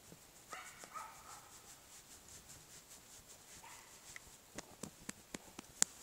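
Cane Corso making two short, faint vocal sounds, the first about half a second in and the second just before four seconds in, with a few light clicks near the end.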